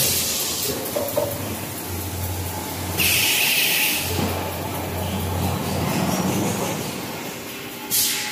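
Band saw log-cutting machine for toilet paper and kitchen towel rolls running, a steady mechanical rumble with a low hum. About three seconds in, a loud hiss lasts about a second.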